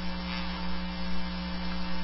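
Steady electrical hum with a faint hiss on an open conference-call phone line between speakers.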